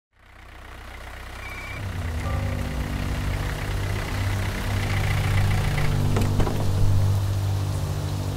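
Low, steady vehicle-engine idle rumble fading in over the first two seconds, with faint high sustained tones over it and a few soft clicks about six seconds in.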